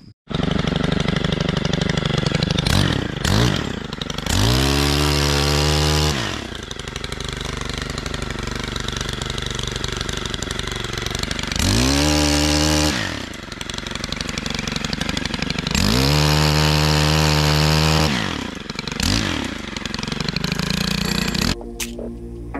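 Stihl pole saw's small two-stroke engine running at a low steady speed, revved in short blips and held at full throttle three times for one to two seconds each while the bar cuts limbs overhead.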